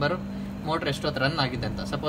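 A man speaking, with a brief pause about half a second long at the start, over a steady low hum.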